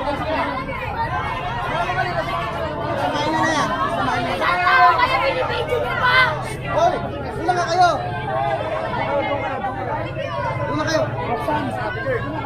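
Crowd chatter: many people talking and calling out over one another, no single voice clear, with a few louder voices between about four and eight seconds in.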